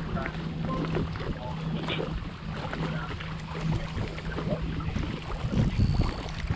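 Small waves lapping and slapping against a kayak's hull, with wind on the microphone and a steady low hum that stops about five seconds in.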